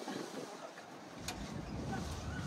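Faint open-air ambience with wind buffeting the microphone, and a single sharp click just past halfway.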